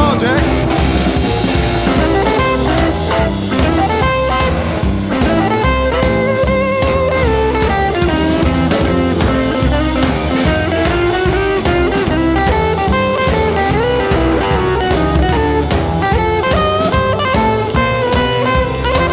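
Roots-rock / rockabilly band playing an instrumental break: electric guitar lead with bent and sliding notes over a steady drum kit and bass beat.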